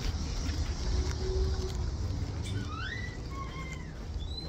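Low rumble of a handheld phone being carried while walking, with several short squeaks that rise and glide in pitch during the last second and a half.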